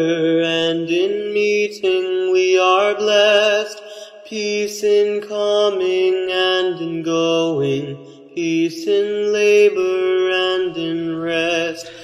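A high school concert choir singing slow, sustained chords in several parts, with the harmony shifting every second or two and short breaths between phrases about four and eight seconds in.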